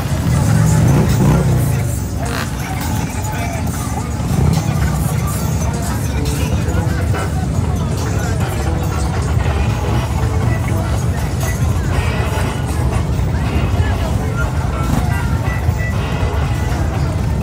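Motorcycle engines rumbling as a line of bikes rides slowly past, loudest about a second in and again around four seconds, over crowd chatter and music.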